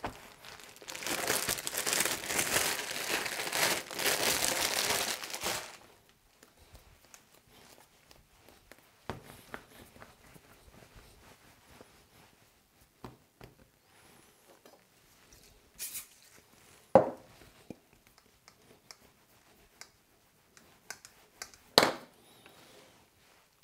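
Plastic wrap crinkling and rustling for about five seconds as a piece of red fondant is unwrapped by hand, then soft, faint handling with a couple of short knocks on the table.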